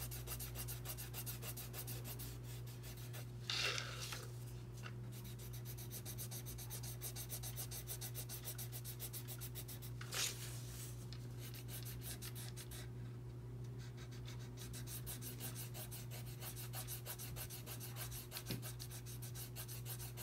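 Colored pencil scratching rapidly back and forth on paper as a large area is shaded in, with a couple of brief louder scrapes about three and a half and ten seconds in. A steady low hum runs underneath.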